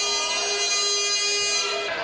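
A steady electronic buzzer tone, one unchanging pitch held for about two seconds and cutting off near the end.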